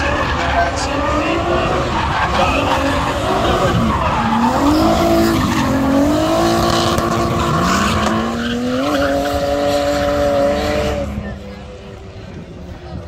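Drift cars sliding in tandem: engines revving hard, the note climbing and falling, over tyre screech. The sound drops away sharply about eleven seconds in.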